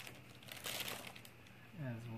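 A short crinkle of packaging, about half a second long, a little before the middle, with a few light clicks before it, as a pair of sunglasses is taken out and handled.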